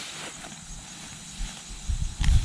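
Rustling of a freshly cut cedar branch as it is pulled free and carried through the grass, with a low rumble underneath.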